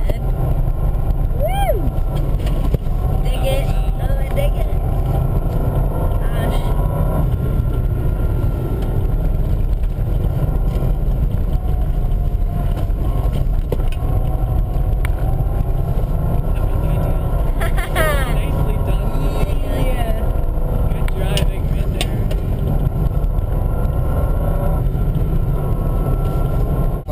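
Steady low rumble of a Subaru Impreza 2.5TS's flat-four engine and tyres on a snow-covered road, heard from inside the cabin.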